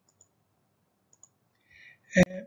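Near silence with a few faint, short clicks, one about a fifth of a second in and a pair about a second and a quarter in, and a faint hiss near the end.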